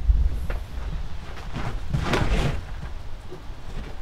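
Wind buffeting the microphone as a low rumble, with a louder gust of rushing noise that swells and fades about two seconds in.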